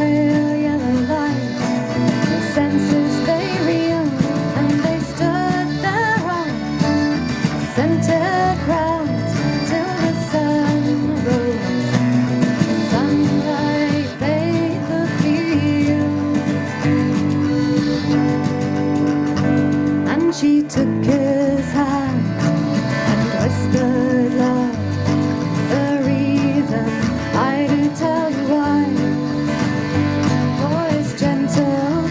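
Live folk song: a woman sings over a strummed acoustic guitar, with accordion, electric bass and hand percussion playing steadily.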